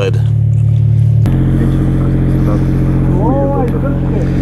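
Steady low drone of an engine running throughout, its tone shifting abruptly about a second in. A voice is faintly heard near the end.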